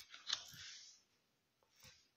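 Faint handling of playing cards: a light click of a card being laid down about a third of a second in, a soft rustle, then near silence with one faint tap near the end.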